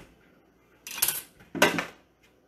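Two short clattering knocks of metal kitchenware and utensils being handled, about a second in and again about half a second later, while a paring knife is picked out for shucking oysters.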